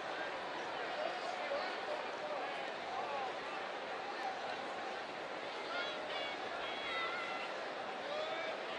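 Steady ballpark crowd murmur: many spectators talking at once, with a few louder voices standing out briefly near the end.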